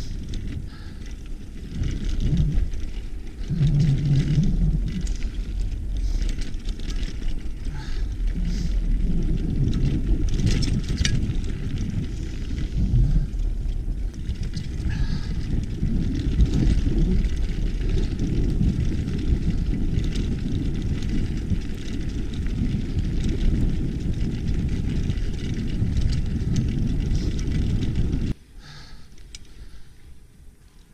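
Mountain bike riding fast down a dirt singletrack: a heavy low rumble of wind buffeting the camera microphone and tyres on the dirt, with small scattered clicks and rattles. It drops off suddenly near the end as the bike stops.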